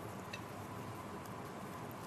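Low, steady background hiss with a faint click or two.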